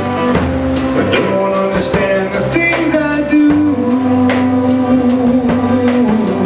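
Live band playing a song: strummed acoustic guitar, electric guitar and drum kit with a steady beat.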